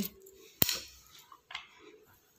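A kitchen knife clicking once sharply against a plate while dates are cut and pitted, then a fainter scrape about a second later.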